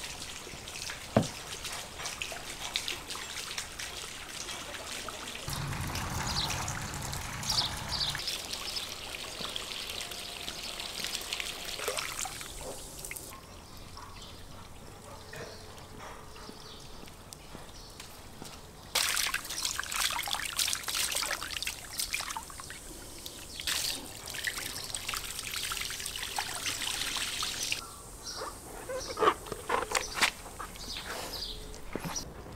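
Water from a garden hose trickling and splashing into a plastic bowl as meat is rinsed, with a quieter stretch midway.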